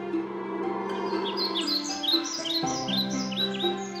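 Bird chirps: a quick run of short, high, falling chirps over gentle background music with held tones, starting about a second in and stopping just before the end.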